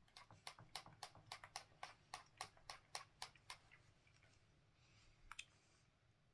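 A quick run of faint, light clicks, about four a second for three and a half seconds, then two more close together near the end.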